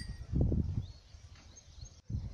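Outdoor rural ambience: low wind rumble on the phone microphone in the first half second or so, then quiet with a few faint distant bird chirps.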